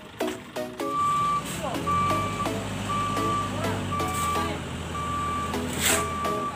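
A vehicle's reversing alarm beeping about once a second, one steady high tone, over a low engine rumble, starting just under a second in. Background music with a steady beat runs underneath.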